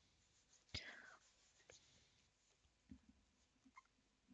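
Near silence: room tone with a few faint handling noises. The loudest is a quick click with a short falling swish just under a second in, followed later by a couple of faint ticks.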